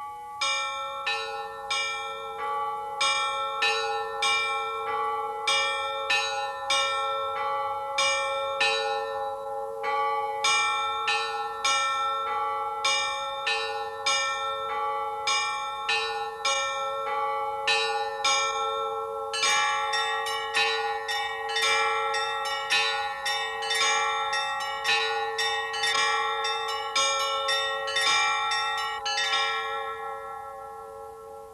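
Church bells ringing a steady run of overlapping strikes, about two a second. About two-thirds of the way in, more bells join and the ringing becomes denser and brighter, then it begins to fade at the very end.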